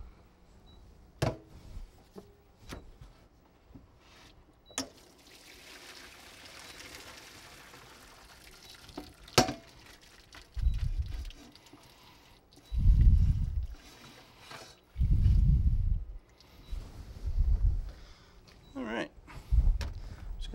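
Pot of cooked pasta drained into a colander in a kitchen sink: a few sharp metal clinks, then a soft rush of pouring water lasting a few seconds about five seconds in. In the second half, a series of dull low thumps, one every second or two.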